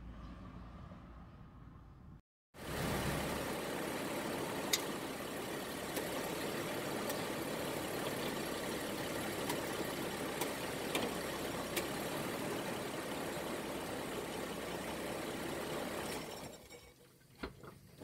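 Vehicle engine idling steadily, heard from beneath the vehicle, with a few light clicks; it starts abruptly after a faint low hum and a brief dropout and fades out near the end.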